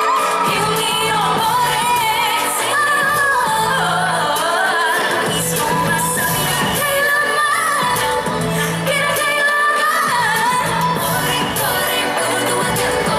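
Live pop song played through a PA system: a woman's lead vocal over a backing track with a repeating bass line.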